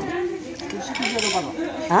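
Knife and fork scraping and clinking on a ceramic plate as meat is cut, with voices talking over it.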